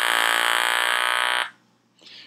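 Handheld electrolarynx buzzing at one fixed, unchanging pitch, the artificial voice source that stands in for vocal-fold vibration. It cuts off about a second and a half in.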